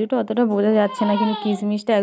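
A woman's voice talking continuously, with long drawn-out vowels.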